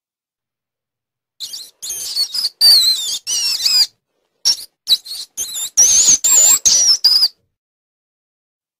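Mouse squeaking: a quick string of short, high-pitched squeaks that waver up and down, starting about a second and a half in, pausing briefly about halfway and ending shortly before the end.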